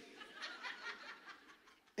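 Faint audience chuckling and laughter that dies away a little over halfway through.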